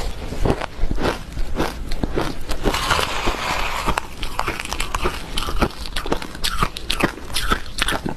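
Close-miked crunching and chewing of crushed, matcha-powdered ice: a dense run of sharp, irregular crackles, with a metal spoon scraping in a plastic bowl as the next spoonful is scooped.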